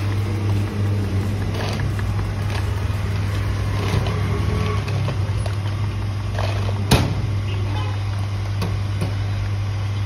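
A motor running with a steady low hum, and a single sharp click about seven seconds in.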